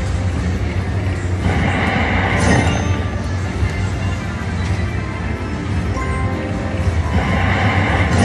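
Music and chimes from a Bao Zhu Zhao Fu (Red Festival) video slot machine as its reels spin, over a steady casino background hum. The sound swells twice, about a second and a half in and again near the end, when a spin lands a small win.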